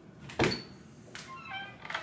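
A wooden cabinet door being pulled open: a sharp click from its catch about half a second in, then a brief squeaky creak as it swings.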